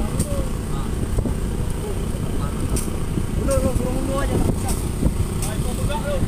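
Steady low rumble of a boat's engine running at sea, with voices calling out faintly over it.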